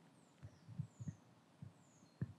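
Near silence, broken by a few faint, short low thumps and faint high chirps that fall in pitch.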